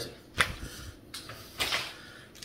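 A sharp click about half a second in, then a short, forceful breath out near the end, from a man straining through a resistance-band pull.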